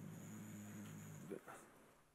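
A man's voice holding a drawn-out hesitation sound on one low, steady pitch for about a second and a half, then stopping.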